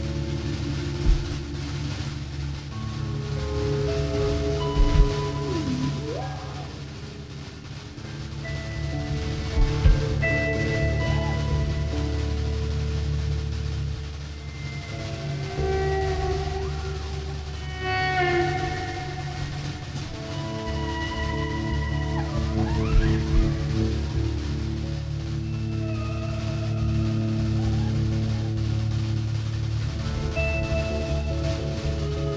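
Rock band playing live with no vocals: electric guitars hold ringing notes and chords over bass and drums. A few guitar notes bend in pitch, and a few sharp drum hits stand out.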